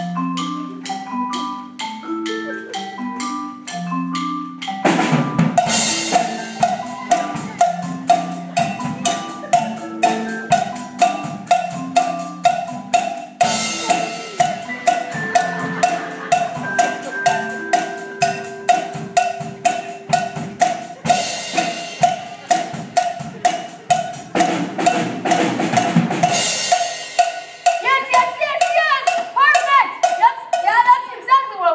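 Marimbas play a repeating riff, then a drum kit and a cowbell join about five seconds in, the cowbell struck on a steady beat through the groove. The band stops near the end and voices follow.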